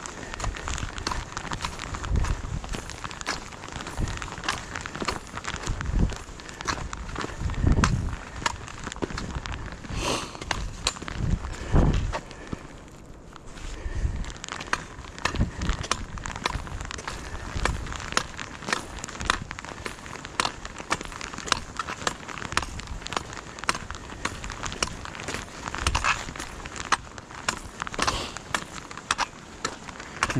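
A hiker's footsteps on a dirt and paved trail, with trekking pole tips clicking against the ground in a steady run and occasional low thumps.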